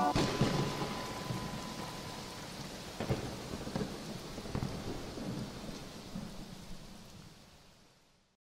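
Rain with low rolling thunder rumbles, fading out steadily to silence after the music stops.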